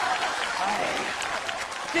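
Studio audience applauding steadily, a dense patter of many hands that thins near the end as a man begins to speak.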